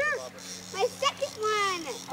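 Short excited exclamations from adults and children, with a faint steady low hum underneath.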